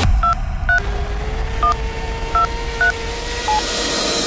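Telephone keypad dialing: about six short DTMF beeps at uneven intervals, each a pair of tones sounding together, over a steady tone, as a phone number is dialed.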